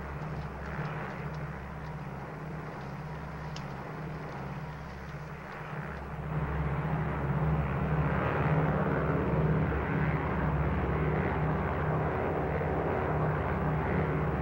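Piston engines of a four-engine propeller airliner, a Douglas DC-6, droning steadily in flight. The drone grows louder about six seconds in.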